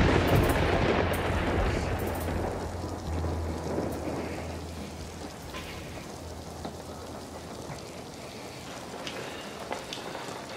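Thunder: a loud clap right at the start that rolls on and fades over about five seconds, over steady rain that keeps falling after the rumble has died away.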